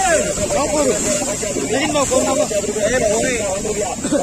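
Several men's voices talking over one another, with a steady high hiss underneath.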